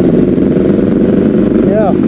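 Motorcycle engine running steadily. Near the end a short sound rises and falls in pitch.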